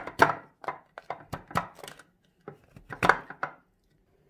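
A yellow plastic lid being fitted onto a glass jar of black olives in olive oil, and the jar handled and shaken to coat the olives. The result is a run of irregular plastic-on-glass knocks and clicks, two or three a second, that stops about three and a half seconds in.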